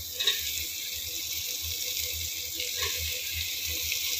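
Steady sizzling hiss from a pot of hot, oily masala as chopped bottle gourd and onion are dropped in.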